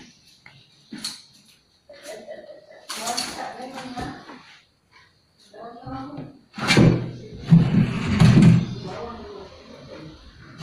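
A bench being handled and shifted on a tiled floor: scattered knocks early on, then a louder run of thumps and bumps in the second half, with brief voices between.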